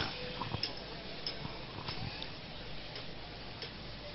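Faint background noise with a few soft, scattered ticks, in a pause between phrases of an amplified speech.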